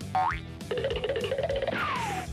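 Comedic cartoon sound effects over light background music: a quick rising boing near the start, a wavering tone in the middle, and a falling whistle-like glide near the end.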